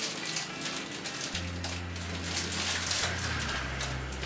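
Clear cellophane wrapping paper crinkling and rustling in quick, irregular crackles as it is handled and gathered around a bouquet.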